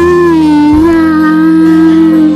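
A singing voice holds one long note over soft, steady musical accompaniment, the pitch dipping slightly before it levels out.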